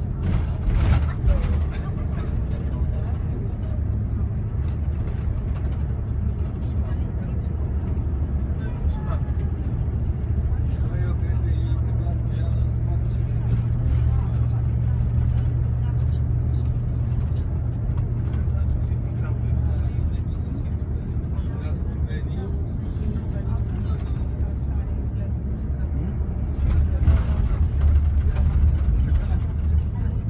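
Steady low engine and road rumble inside a moving vehicle, heard from within the cabin, growing a little louder near the end.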